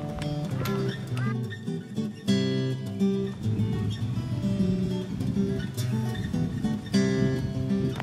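Background music: an acoustic guitar playing a run of plucked notes that change pitch in steps.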